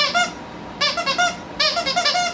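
Squeaker inside a plush dog toy squeezed repeatedly: three quick rounds of high squeaks, a little under a second apart.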